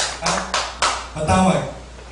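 Quick, even tapping, about four strikes a second, that stops about a second in, followed by a man's short questioning 'Ha?'.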